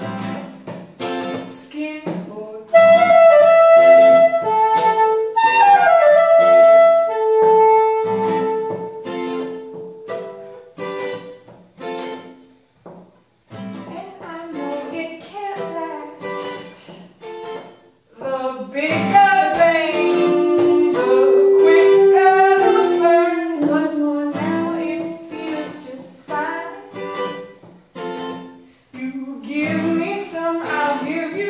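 Acoustic guitar strummed in a steady rhythm under a soprano saxophone playing long, held melody notes. Around the middle the saxophone drops out and the guitar carries on alone and quieter, then the saxophone comes back loud.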